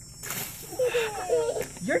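Ice water from a small plastic bucket pouring and splashing over a man's head, a short splashing hiss early on, followed by a high-pitched cry.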